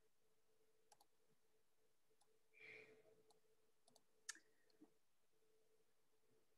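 Near silence: faint room tone with a low steady hum and a handful of faint, sharp clicks scattered through it, the loudest about four seconds in, and a soft brief rustle a little before the middle.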